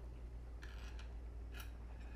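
A man chewing a mouthful of raw fish: a few soft, short mouth clicks about half a second and a second and a half in, over a low steady hum.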